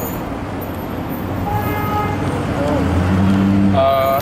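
City street traffic with a vehicle horn sounding briefly about one and a half seconds in, followed by a deeper steady tone from a passing vehicle for about a second near the end.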